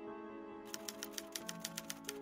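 Rapid typewriter-style keystroke clicks, about nine a second, starting under a second in, over soft, steady background music.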